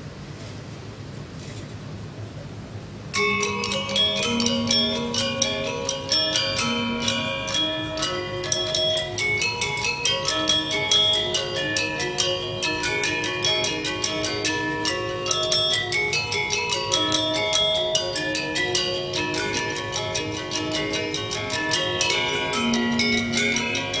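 Balinese gamelan gender wayang quartet: bronze-keyed metallophones struck with mallets. After a quiet first few seconds, the piece starts abruptly about three seconds in with dense, ringing notes.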